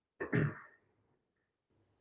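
A man clearing his throat once, briefly, near the start.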